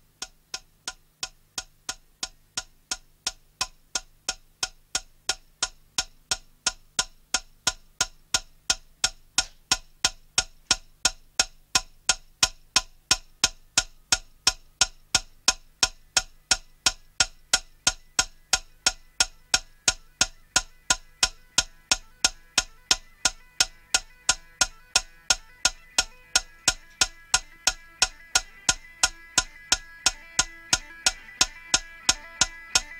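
Steady clock-like ticking, about three ticks a second, growing gradually louder as part of a recorded piece of music. In the last third a sustained tone swells in behind the ticks.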